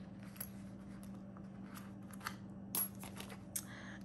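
A few coins clinking one at a time as they are set down on a hard tabletop, a handful of separate light clicks, the sharpest near the end. The coins come out of a clear plastic zipper pouch, which crinkles faintly as it is handled.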